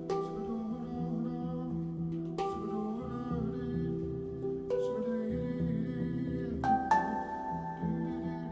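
Handpan played slowly, one or two notes struck about every two seconds, each ringing on and overlapping the next, over a low, sustained humming voice.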